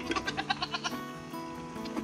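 Background music, with a goat giving a short quavering bleat of rapid pulses in the first second.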